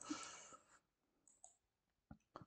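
Near silence: room tone, with a faint click and a brief soft hiss right at the start.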